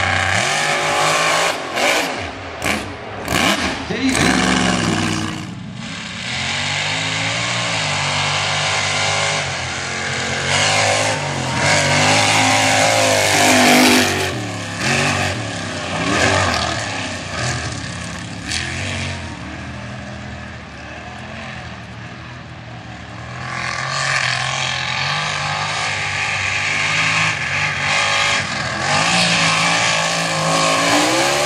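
Mega mud truck engines running hard through a mud racing course, their pitch climbing and falling with the throttle, with sharp cracks in the first few seconds. The sound eases off around twenty seconds in, then another truck's engine revs up loudly near the end.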